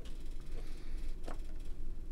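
Hands handling a mirrorless camera with a bolt-on hand grip: a few faint clicks and rubs, about half a second apart near the middle, over a steady low room hum.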